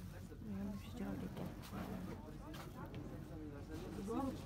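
Quiet voices talking in the background over a low steady hum.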